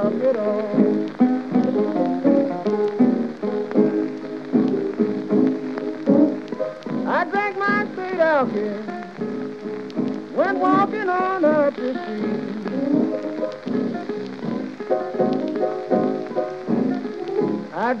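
Piano-and-guitar blues instrumental break from a late-1920s 78 rpm record, with a steady crackle and hiss of disc surface noise. Two sliding lead phrases rise and fall about seven and ten seconds in.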